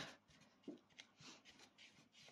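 Near silence, with faint rubbing and a couple of light taps from a lump of soft clay rolled around inside a wooden bowl to round it.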